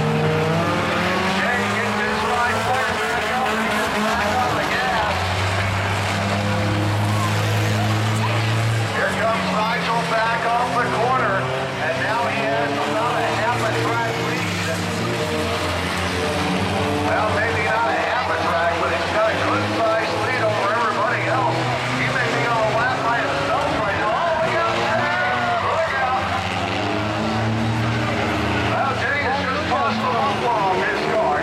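Several car engines running and revving unevenly as the cars slide around an oval on rear rims fitted with welded steel plates instead of tyres, over crowd voices.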